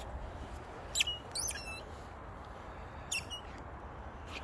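Rubber squeaky dog toy squeaking as a boxer chews it: one short squeak about a second in, a quick run of squeaks just after, and another squeak a little past three seconds.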